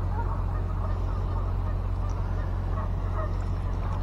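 Faint, scattered honking of geese over a steady low rumble.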